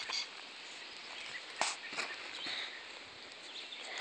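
Quiet outdoor background with a few faint, sharp clicks, one about one and a half seconds in and another about half a second later.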